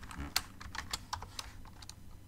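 Computer keyboard being typed on: quick, irregular light key clicks in short runs.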